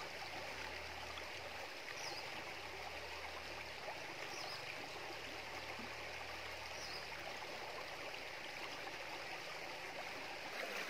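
Shallow stream rippling over rocks and stones, a steady, even rush of water.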